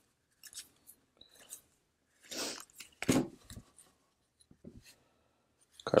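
Paper baseball trading cards being handled and flipped one by one from one hand to the other: soft, scattered rubbing and flicking of card against card, with a longer slide about two and a half seconds in and a sharper snap just after it.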